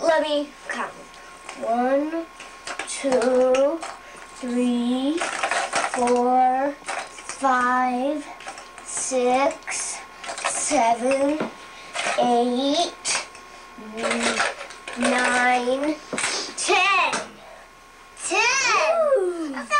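A young child's high voice in short sing-song phrases about once a second, some notes held flat, with light clatter of plastic Easter eggs against a plastic bowl.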